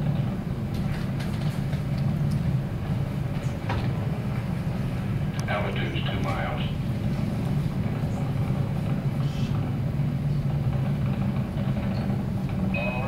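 Steady low rumble of the Saturn V rocket climbing after liftoff, from Apollo 11 launch footage played back over loudspeakers in a room.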